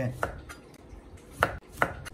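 Chinese cleaver slicing a lemon into thin rounds, the blade knocking on a plastic cutting board a few times, with two sharp knocks near the end.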